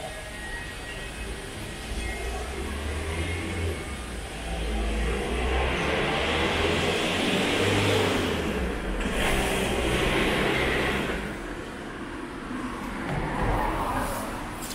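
Street traffic: a car passes close by, its engine and tyre noise building to a peak about eight seconds in and then fading, over a low engine rumble. A second, smaller swell of vehicle noise comes near the end.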